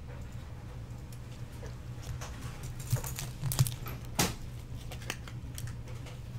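A few light clicks and taps as baseball cards and a rigid plastic card holder are handled and set down on a desk mat, the sharpest about four seconds in, over a steady low hum.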